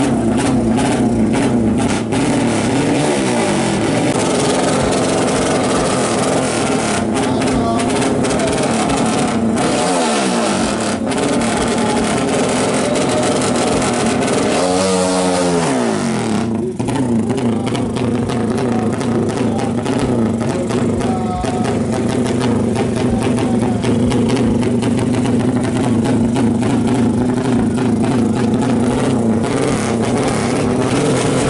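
Drag-racing motorcycle engines running loudly at the start line, steady between bursts of throttle. The engine pitch swoops up and down a few seconds in, again around ten seconds, and most strongly around fifteen seconds.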